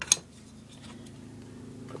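A single sharp click of hard plastic parts being handled, a loose grip panel and an airsoft pistol frame picked up off a wooden table, followed by a few faint ticks.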